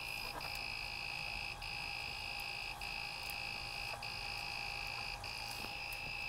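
Creality Ender-3 3D printer's buzzer sounding a long, high beep, broken by a short gap about every second and a quarter. This is the alarm that the print is paused for a filament change.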